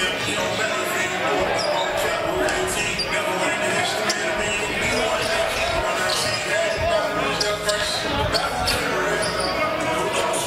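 Several basketballs bouncing on a hardwood gym floor during warm-ups, a steady scatter of overlapping thuds, with short high squeaks among them.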